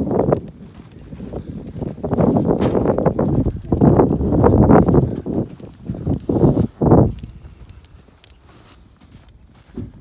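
Footsteps crunching on packed snow close to the microphone, in an uneven run of steps that stops about seven seconds in.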